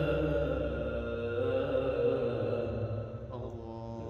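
A man reciting the Quran in the melodic, drawn-out tajweed style of qirat: one long held vocal note with slight turns in pitch, trailing off and growing fainter about three seconds in.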